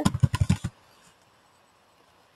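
Computer keyboard keys tapped in a quick run of about seven keystrokes in the first second, typing a short word.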